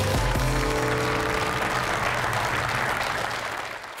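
Show theme music that ends about a second in, under studio audience applause that swells and then dies away near the end.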